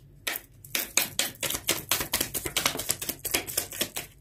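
Tarot deck being shuffled by hand: a quick run of card slaps, about seven a second, starting a moment in and stopping just before the end.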